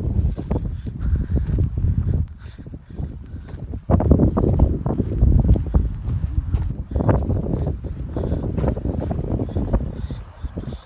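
Wind buffeting a phone's microphone in uneven gusts, dipping briefly and then growing stronger about four seconds in.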